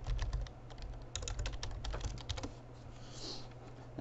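Typing on a computer keyboard: a fast run of keystrokes for about the first two and a half seconds, then stopping.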